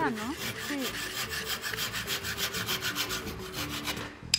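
Handsaw cutting through a thin piece of wood in quick, even back-and-forth strokes. The strokes stop near the end as the cut goes through.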